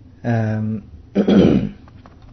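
A man clearing his throat: a short steady hummed sound, then a rough, cough-like clearing just after a second in.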